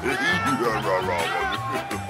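Cartoon cat meows, gliding up and down, over upbeat background music with a steady beat.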